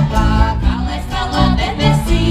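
Live folk band playing through a stage sound system: several women singing together over acoustic guitars and accordion, with a heavy, pulsing bass beat.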